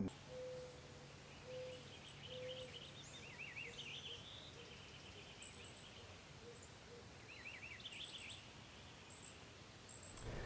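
Faint outdoor ambience of small birds: short high chirps in little clusters repeat throughout, with a few quick downward twitters.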